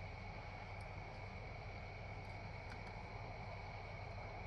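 Quiet outdoor night ambience: a steady low hum and a constant high-pitched drone, with a few faint clicks.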